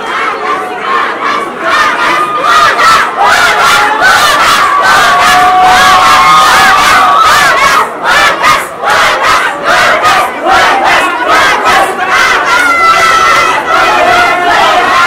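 A dense crowd of fans shouting and chanting slogans, many voices yelling at once. Two rival camps are chanting separately, each for its own star. It is loud throughout, with a brief lull about eight seconds in.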